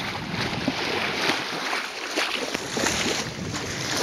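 Sea water rushing and splashing along the hull of a sailing yacht under way, in uneven surges, with wind buffeting the microphone.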